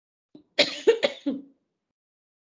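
A person coughing and clearing the throat: a short run of three or four quick coughs, starting about half a second in and over within a second.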